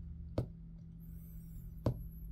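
Two light taps of a hand on a tabletop, about a second and a half apart, over a steady low hum.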